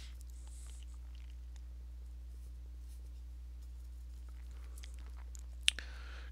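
Faint, scattered dabs and scrapes of a bristle brush laying thick oil paint on canvas, over a steady low electrical hum. A single sharp click near the end.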